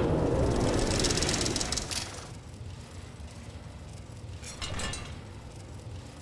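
Mechanical sound effects for an animated title graphic: a loud metallic rush with a fast rattle, like a dial spinning, for the first two seconds. It then fades into a low rumble, with a brief second rattle about five seconds in.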